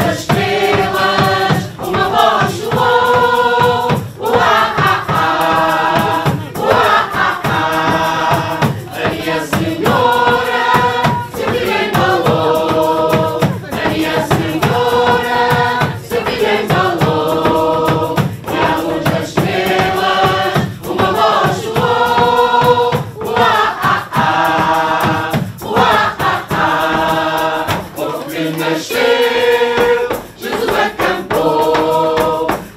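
Mixed choir of adults and children singing a song in short phrases of about two seconds, with brief breaks between them.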